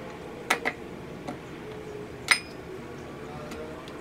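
Metal spoon clinking against a ceramic bowl while ingredients are spooned in. Two light clicks come about half a second in, then a louder clink with a short ring a little past two seconds.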